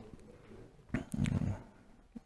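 A pause in a man's talk, broken about a second in by a short, low voiced murmur like a hesitation or a listener's "mm-hmm".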